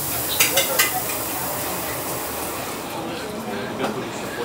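Wok stir-frying: a steady sizzle with three sharp metal clinks about half a second in. The high hiss falls away near the end.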